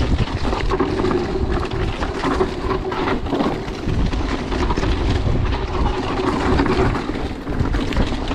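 Mountain bike descending fast on a dry dirt trail: wind rushing over the chest-mounted camera's microphone, tyres rolling on dirt, and the bike rattling with frequent knocks over bumps. A steady mid-pitched whirr runs underneath for most of it.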